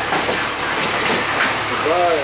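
Cabin noise inside a 2005 Gillig Phantom transit bus: the Cummins ISL diesel runs with a steady low drone under a haze of road and interior noise, with a few short clicks and rattles.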